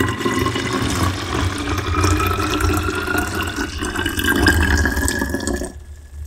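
About 500 ml of distilled water poured from a plastic measuring cup into an accordion-style chemical storage bottle, the pitch of the pour rising steadily as the bottle fills. The pour stops near the end.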